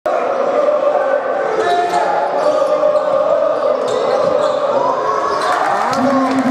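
Sound of an indoor basketball game heard from the stands: a basketball bouncing on the hardwood court under a continuous hubbub of spectators' voices, some calls held for a second or more, with a few sharp knocks near the end.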